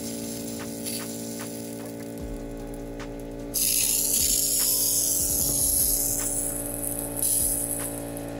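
Background music plays steadily throughout. About three and a half seconds in, a loud hiss comes in from a lawn sprinkler head spitting compressed air and fine mist as the zone is blown out for winterization. The hiss fades out near the end.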